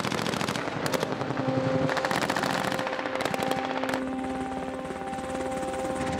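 Automatic weapon fire in long, rapid strings of cracks that run almost without a break.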